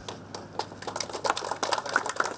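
A small group clapping: scattered, uneven handclaps that thicken about half a second in.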